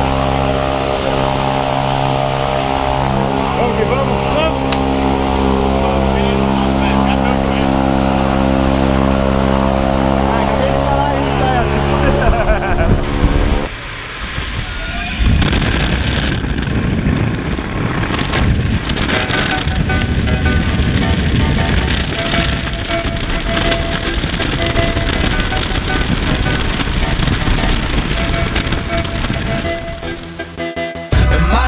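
Single-engine propeller plane running steadily close by on the ground, its engine and propeller giving a constant droning tone, with voices over it. After a cut about 13 to 14 seconds in, the noisier engine and wind sound of the same plane in flight.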